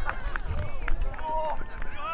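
Distant shouting voices of players on a soccer pitch calling out, over a low rumble, with a sharp knock about a second in.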